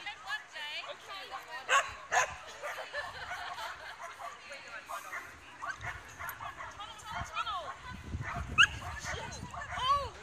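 Dog barking and yipping in short calls over a background of people's voices, with a couple of sharp knocks about two seconds in.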